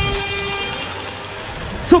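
Hard dance DJ set music in a breakdown: held synth tones with no kick drum, slowly getting quieter. An MC's shouted voice cuts in just before the end.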